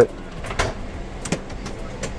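Steady cabin hum inside a Boeing 777, with two light knocks about half a second and a second and a quarter in.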